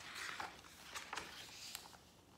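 Page of a hardcover picture book being turned: a rustle of paper in the first second, followed by a few light ticks as the page settles.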